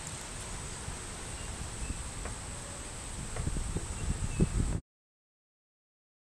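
Outdoor summer ambience: a steady high-pitched insect drone, a few faint bird chirps, and low wind rumble on the microphone that grows gustier near the end. It all cuts off abruptly to silence about five seconds in.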